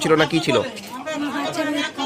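Speech: a woman talking, with other voices chattering around her.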